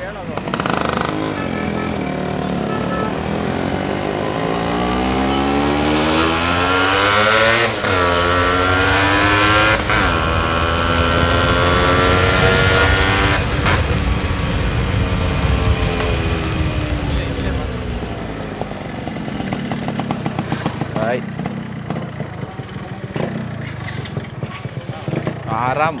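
Yamaha RX135's two-stroke single-cylinder engine under way, pulling up through the gears: the note climbs and drops back at each shift, three times in the first half, then holds and falls away as the bike slows and runs lower toward the end.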